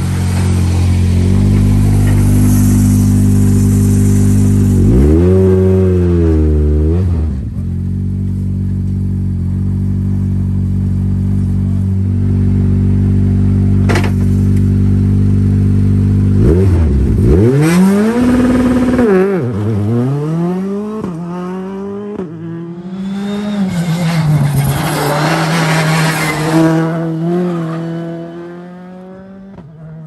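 Citroën C3 rally car's turbocharged four-cylinder engine running at a steady idle, blipped sharply a few times, then pulling away and accelerating hard through several rising sweeps before fading out near the end.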